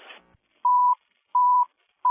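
Short beeps of a radio dispatch alert tone heard through a scanner, each at the same steady pitch and about two-thirds of a second apart. There are two full beeps, and a third begins at the very end.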